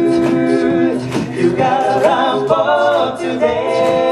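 Male a cappella group singing sustained chords in several voice parts, the harmony shifting twice. Sharp percussive hits keep a steady beat underneath.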